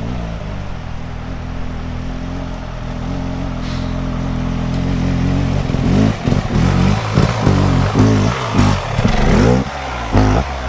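Motorcycle engine approaching up a dirt track, running steadily and growing louder. From about six seconds in, the revs rise and fall again and again as the rider works the throttle while passing close by.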